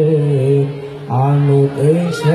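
A man singing sholawat, a devotional Islamic chant, into a microphone: long ornamented notes with wavering pitch, broken by a short breath about a second in.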